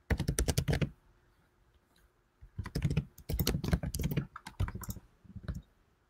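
Typing on a computer keyboard: quick runs of keystrokes in four bursts with short pauses between them.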